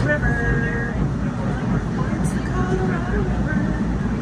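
Steady low rumble of a moving Amtrak passenger train heard from inside the car. A voice rises over it now and then, strongest near the start.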